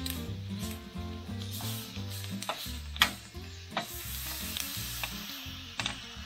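Peppers sizzling on a ridged grill pan while metal tongs turn them, with sharp clicks of the tongs against the pan, the loudest about three seconds in. Background music with a steady bass line runs underneath.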